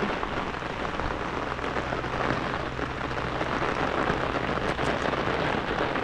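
Steady rain falling: an even, continuous patter with no break.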